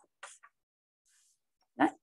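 A dog barking once, a single short, loud bark near the end, preceded by a few faint small sounds.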